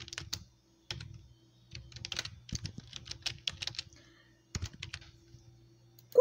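Computer mouse clicking and tapping in irregular clusters while words are drawn freehand on screen, over a faint steady hum.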